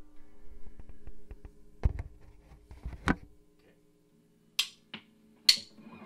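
A low steady hum with scattered soft knocks, then a brief near-quiet stretch. Near the end come a few sharp, bright clicks less than a second apart, like a count-in before the band starts without a drummer.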